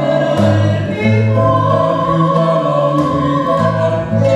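Live song: a woman and a man singing together in long held notes, accompanied by acoustic guitar.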